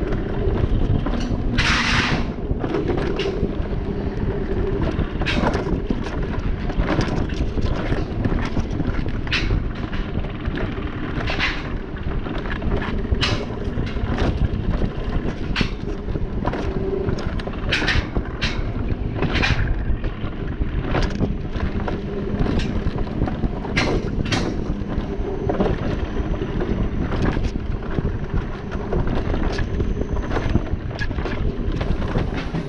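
Wind rushing over the microphone and an alpine mountain coaster cart's wheels rumbling along its tubular steel rails, with frequent short, sharp clacks as it runs.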